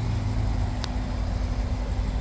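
Steady low hum of a car engine idling, with one short sharp click about halfway through.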